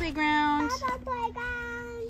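A young child singing a few long held notes that slide into pitch, over a steady low tone.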